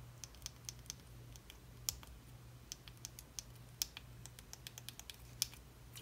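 Small tactile switches of a five-way navigation joystick module clicking faintly and irregularly as it is pressed and rocked by hand, over a faint low electrical hum.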